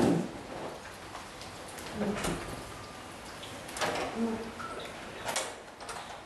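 A water bottle handled during a sip of water: a few scattered knocks and clicks, with faint murmured voices.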